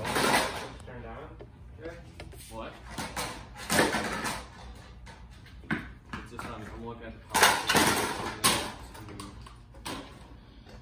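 Indistinct voices talking, too quiet and unclear to make out words, with a few short knocks and clatters from objects being handled.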